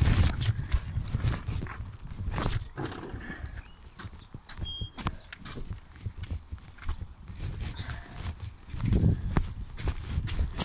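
Handling noise of a phone carried while walking: irregular knocks and clicks over a low rumble, loudest at the start and again about a second before the end.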